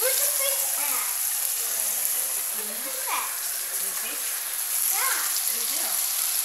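Stingray and mullet pieces frying in a pan on a stovetop, sizzling steadily, with a few faint voices over it.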